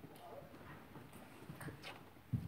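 Quiet room with a few faint light clicks and taps from people moving about near the altar, more of them in the second half.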